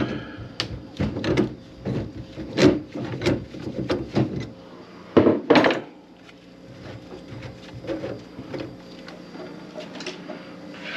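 Knocks and clunks of the wooden cabinet under a kitchen sink being opened and things inside it moved about. The clunks come thick and fast for the first six seconds, then the handling goes quieter.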